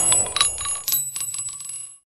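Light metallic clinks, each with a brief bell-like ring, over a high ringing tone. The sound dies away over about two seconds and then cuts off suddenly.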